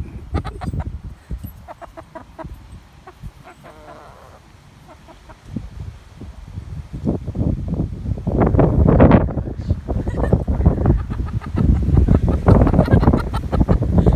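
Hens clucking, with loud rustling and rumbling noise starting about seven seconds in.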